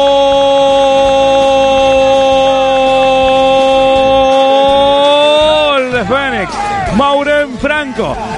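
Radio football commentator's long goal shout, one held "gooool" sustained at a steady pitch for over five seconds, then dropping and breaking into quick repeated shouts near the end.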